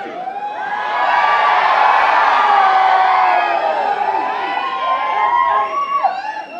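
A packed crowd cheering and screaming, many voices shouting at once. It swells about a second in and stays loud, easing slightly near the end.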